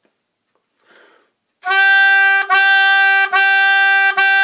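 Oboe playing the G above middle C as a string of long, steady notes, each started cleanly with the tongue. A faint breath comes about a second in, and the first note starts about a second and a half in, followed by two more at the same pitch.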